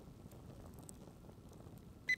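Near silence: faint outdoor background with a couple of faint ticks.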